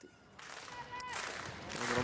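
Faint open-air ambience at a football pitch, with distant shouts and one sharp crack about a second in.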